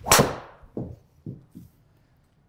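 Cobra Darkspeed LS driver striking a golf ball off the tee with a sharp crack, followed by three softer thuds that grow fainter.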